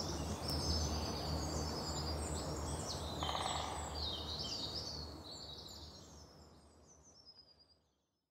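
Outdoor ambience of birds chirping over a low steady rumble, fading out about six seconds in.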